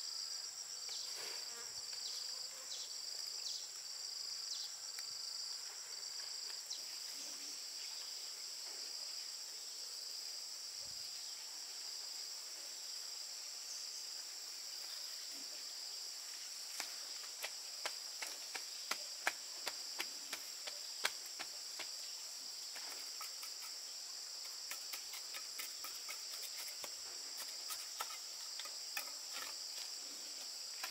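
Insects chirring steadily in a high, shrill chorus; one of the calls pulses about twice a second for the first several seconds. From about halfway, a run of sharp, irregular clicks and ticks cuts through the chorus.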